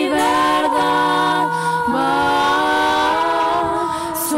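A female vocal trio singing held notes in swing-style close harmony, the chord moving about once a second.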